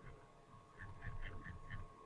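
A faint, quick run of about six soft clicks in about a second, over a faint steady electrical hum.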